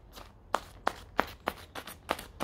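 Scissor points poking small drainage holes in a soil-filled plastic bag, each puncture a sharp click or pop, about three a second.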